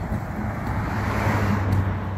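A motor vehicle passing on the street, its engine hum and tyre noise swelling to a peak about one and a half seconds in and then easing off.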